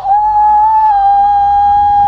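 A man's voice holding one long, loud, high-pitched shout on a single note. It slides up at the start and dips slightly about a second in.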